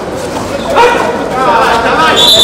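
A kabaddi raider's chant, the repeated 'kabaddi, kabaddi' cant shouted in short bursts during a raid: one burst about a second in, another near the end.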